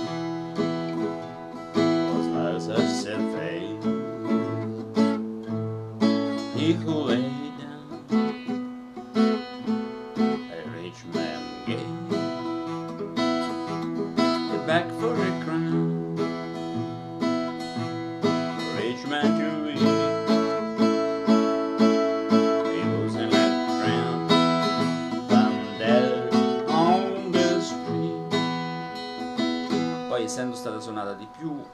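Steel-string acoustic guitar played solo, chords and picked notes ringing on without a break. The player says the large pickup in its soundhole somewhat dampens its tone.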